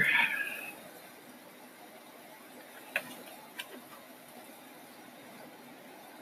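Quiet room with two faint, sharp clicks, about three seconds in and again half a second later.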